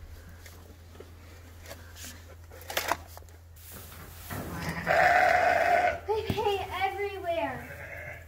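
A sheep bleating twice: a loud, harsh call about four and a half seconds in, then a longer wavering call that falls in pitch.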